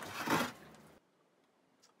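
A short scrape of fresh coconut flesh being grated by hand, fading out within the first second and followed by dead silence.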